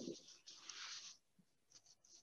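Near silence: room tone from a remote video-call feed, with two faint, brief rustles in the first second, like paper or clothing brushing a microphone.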